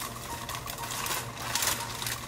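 Plastic cake-mix bag crinkling in a fast, rattly run as the dry mix is shaken out of it into a plastic bowl.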